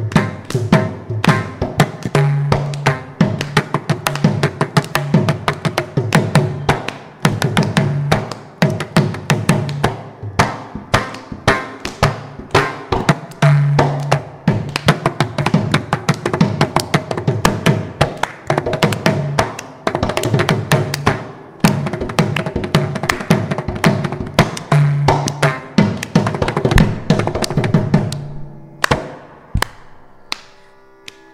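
Mridangam and kanjira playing a fast, dense Carnatic percussion solo (thani avartanam), with crisp strokes and deep booming bass strokes from the mridangam over a steady drone. The playing thins out near the end.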